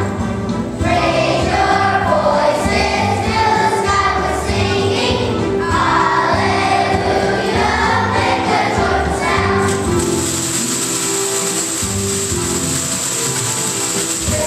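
A children's choir sings a Christmas song over instrumental accompaniment. About ten seconds in, the voices drop out and the accompaniment carries on, joined by a steady, high shimmer.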